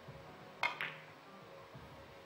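Carom billiard balls: the cue strikes the cue ball with a sharp click about half a second in, followed a moment later by a second click as it hits another ball.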